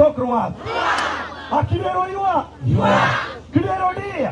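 A man shouting short calls through a microphone and loudspeaker, and a large crowd shouting back together, twice, about two seconds apart: call-and-response rally chanting.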